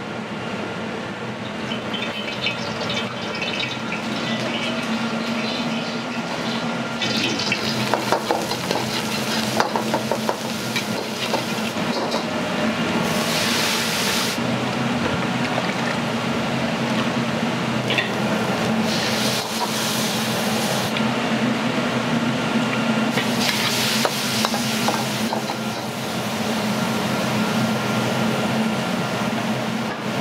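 A gas wok burner running steadily under oil and sauce sizzling in a carbon-steel wok while mapo tofu cooks. A steel ladle clinks and scrapes against the wok, and the sizzling flares up louder a few times.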